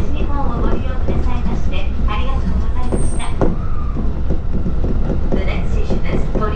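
Commuter train running: a steady low rumble of wheels on rails heard inside the car, under an onboard announcement in Japanese.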